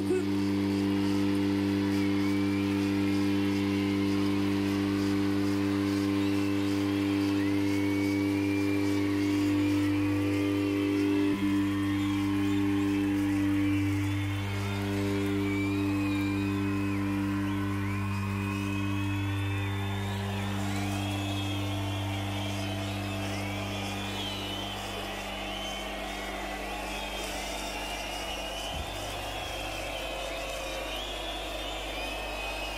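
A steady low drone held from the stage amplifiers after the last song, shifting a little partway through and fading out near the end, with whistles and cheers from the audience over it.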